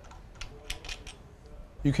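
A few light, scattered clicks of small metal engine parts and tools being handled on the cylinder head.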